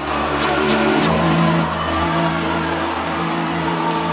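Live church worship music on keyboard: sustained low chords held steady, with a few short bright accents near the start.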